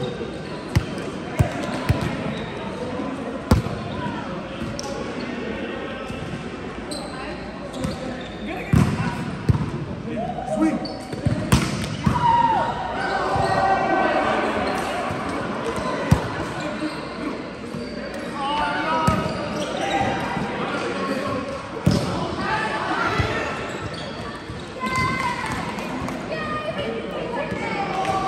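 Volleyball being played: scattered sharp slaps as the ball is hit off hands and forearms and strikes the floor, with players calling out to each other, echoing in a large hall.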